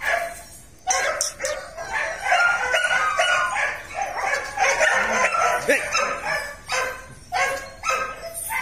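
Dogs barking, a dense run of calls from about a second in until about six seconds, then a few more near the end.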